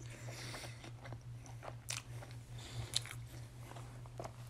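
Close-miked chewing of a mouthful of Burger King Whopper Jr. with the mouth closed: quiet, wet mouth sounds with a few small clicks. A faint steady low hum lies under it.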